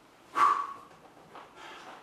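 A man's short, sharp exertion grunt as he lifts into a hip raise, about half a second in; it is the loudest sound.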